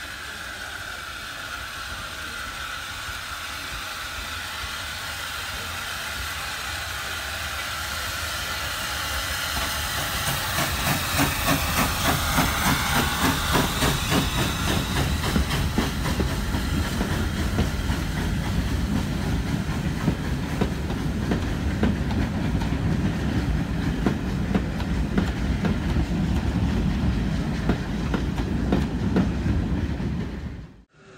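South Eastern and Chatham Railway O1 class steam locomotive and its train running past. A hiss of steam grows louder as the engine approaches over the first ten seconds. The carriage wheels then clatter steadily over the rail joints as the coaches roll by close.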